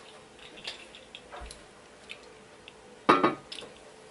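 A few faint taps and clicks, then about three seconds in a sudden loud knock with a brief ringing tone as a hand meets the aquarium's glass lid. A faint steady hum runs underneath.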